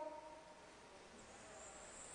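Near silence in a pause of speech: the last word's echo fades in the church, leaving faint room tone with a thin high hiss.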